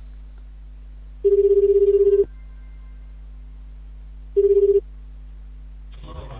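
Ringback tone of an outgoing internet phone call: one ring lasting about a second, then a second, shorter ring that cuts off as the call is answered.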